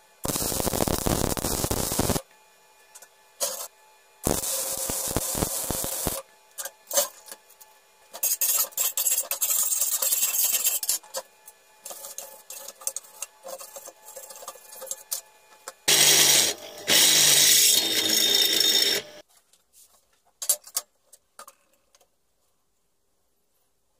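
MIG welder arc on a steel tube and fitting: two bursts of steady crackling, each about two seconds, with a quiet gap between. Then a choppy stretch of short rubbing and scraping strokes on the metal, and a louder, deeper three-second burst of noise near the end.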